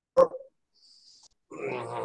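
A man's voice only: a short vocal sound just after the start, then about half a second of silence, then a drawn-out, steady hesitation sound ('uhh'/'mmm') near the end as he gathers his words before speaking.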